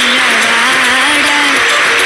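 Studio audience applauding, a dense steady clatter of many hands. Under it runs one long held note that ends about one and a half seconds in.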